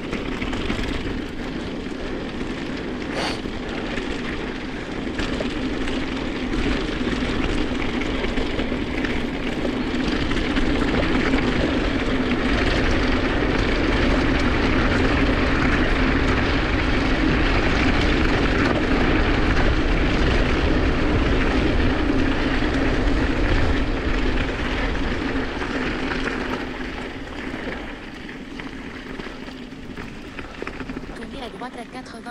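Mountain bike tyres rolling over a gravel dirt track, with wind buffeting the handlebar-level camera microphone: a steady rumble that grows louder toward the middle and eases off near the end.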